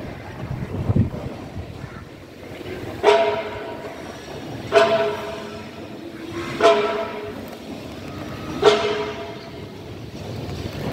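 Four struck, ringing tones about two seconds apart, each starting sharply and fading over about a second, over low wind rumble on the microphone.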